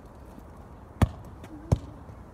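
Two loud, sharp knocks, under a second apart, about halfway through.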